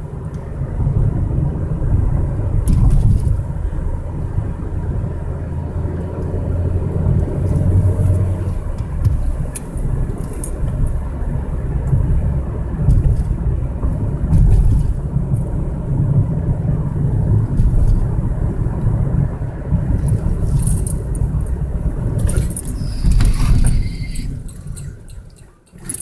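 Car engine and road rumble heard from inside the cabin while driving, with occasional light clicks and rattles. Near the end the rumble dies away as the car slows to a stop.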